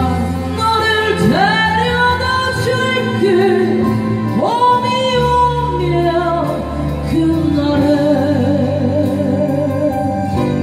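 A woman sings a slow Korean ballad into a handheld microphone over a backing track. Her voice slides up into long held notes about one second and four seconds in, and wavers with vibrato near the end.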